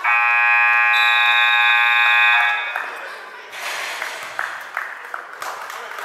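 Gym scoreboard horn blaring for about two and a half seconds before cutting off, followed by voices and general gym noise.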